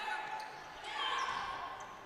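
Faint game sound from a basketball court: the ball bouncing and short high squeaks in a large gym.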